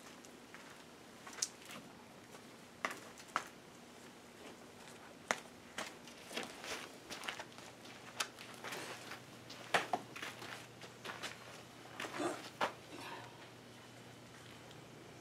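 Irregular soft knocks, taps and rustles, scattered a second or so apart, from a large wooden-framed canvas being handled and tilted.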